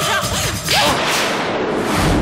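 A sharp whip-like swish sound effect about two-thirds of a second in, fading away afterwards, over a dense dramatic background score.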